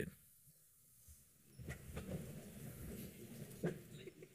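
Near silence at first, then faint shuffling and rustling of people moving in their seats and on the floor, with a soft knock near the end.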